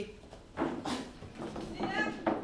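Classroom bustle as students get up from their desks: a few short knocks and scrapes of chairs and feet, with brief murmured voices.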